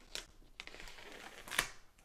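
Folding knife cutting along the edge of a cardboard box: a faint scraping, with a small click just after the start and a sharper click about one and a half seconds in.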